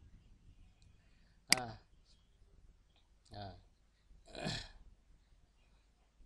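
A person's voice making three short, separate sounds, about one and a half, three and a half and four and a half seconds in, the last a little longer, with quiet room tone between them.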